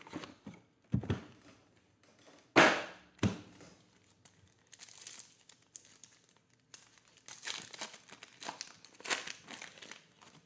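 Foil trading-card pack being torn open and its wrapper crinkling, in stretches in the second half, after a few sharp clicks in the first few seconds, the loudest about two and a half seconds in.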